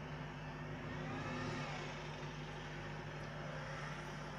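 Steady low hum over background noise, with a faint wavering sound rising and falling about one to two seconds in.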